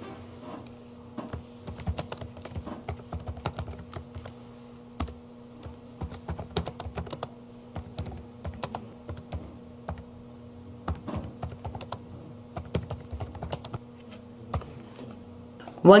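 Typing on a computer keyboard: irregular runs of key clicks with a few short pauses, over a faint steady hum.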